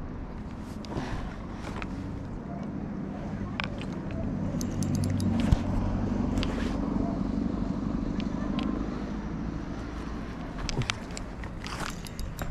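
A low engine hum swells from about four seconds in and eases after about nine seconds, with scattered sharp clicks and footsteps of someone walking over rocky ground.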